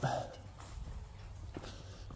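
Faint footsteps on grass and then barn straw, with a soft tick partway through.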